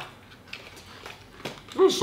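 Faint eating sounds: quiet chewing with a few light clicks of a fork against a plate, then a man's voice near the end.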